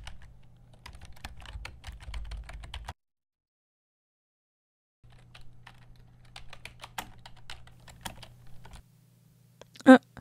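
Typing on an Acer laptop keyboard: quick, irregular key clicks over a low steady hum, broken by about two seconds of dead silence three seconds in.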